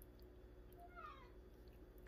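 A house cat meowing once, faintly, about a second in, the call falling in pitch.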